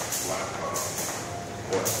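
People talking; no other distinct sound stands out.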